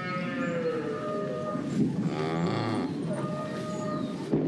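Cow mooing: a long drawn-out call, slightly falling in pitch, then shorter calls.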